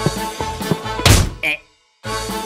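Cartoon soundtrack music with a loud thunk about a second in, a comic impact sound effect.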